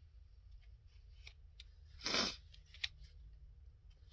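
Faint paper handling, small ticks and rustles as a sheet is folded over and pressed down, over a low steady hum. About two seconds in comes a short, louder sniff through a stuffed nose.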